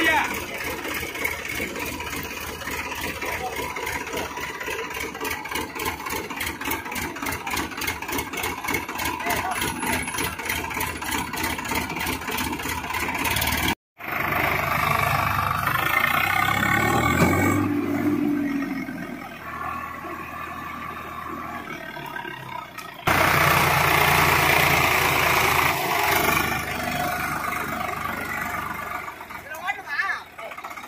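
Swaraj 744 FE tractor's three-cylinder diesel engine running with a rapid, even beat. After a cut just before the middle, it works harder and rises in pitch as the tractor drives with its rotavator through deep mud, with a sudden louder stretch in the last third.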